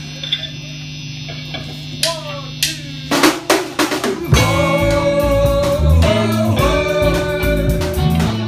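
Live rock band starting a song: a steady low tone and a few scattered drum hits, then about four seconds in the drums, electric guitars and bass come in together and play on loudly.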